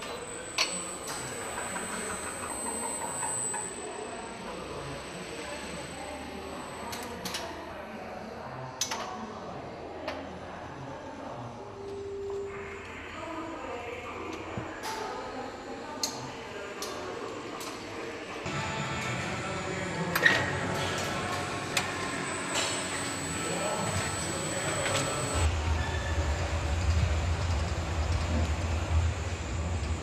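Automated overhead conveyor with bicycle carriers running along its ceiling rail: a steady mechanical noise with scattered sharp clicks and clanks, and a low hum that joins in near the end.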